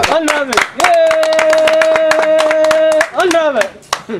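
Quick, steady hand clapping by a man. About a second in, a voice holds one long even note for roughly two seconds over the claps, with voice heard either side of it.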